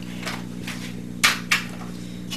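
Two sharp knocks a quarter-second apart about a second in, from an aluminium kick scooter being knocked against the floor as it is handled, with a few lighter clicks before them. A steady low hum runs underneath.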